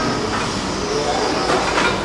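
Steady noise of a busy buffet dining hall, with a few faint clicks and clinks about a third of a second in and near the end.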